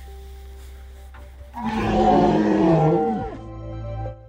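A dubbed-in dramatic animal roar sound effect starts about a second and a half in and lasts under two seconds, dropping in pitch as it ends. Soft background music plays underneath.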